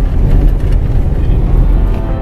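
A car driving on an asphalt road, heard from inside the cabin: a loud, steady low rumble of engine and tyre noise with a few faint knocks.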